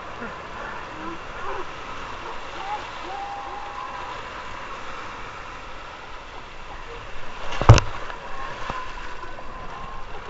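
Ocean surf breaking and washing around people wading in the shallows, a steady rushing of water with faint voices. About three quarters of the way through the surf gets louder and a single sharp, loud splash close to the microphone stands out as the loudest sound.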